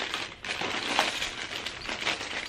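Plastic packaging being handled and crinkled in hand, a continuous crackly rustle, as a mail package is opened and its contents taken out.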